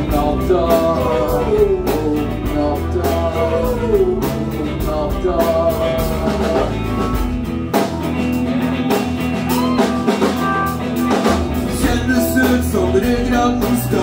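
A live rock band playing, with electric guitars, bass and drums, and a male singer's vocals over the first half. About eight seconds in, the low bass drops out for around three seconds, then comes back.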